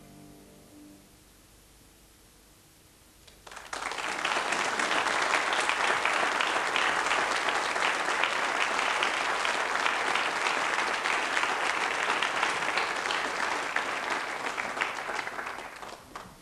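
The last note of a viola piece dies away in the first second. After a short hush, an audience breaks into applause about three and a half seconds in, which carries on steadily and stops just before the end.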